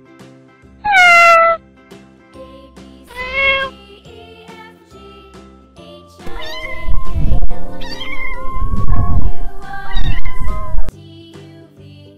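Domestic cat meowing: two short meows about one and three and a half seconds in, then a longer, louder run of yowling calls from about six to eleven seconds. Soft background music plays underneath.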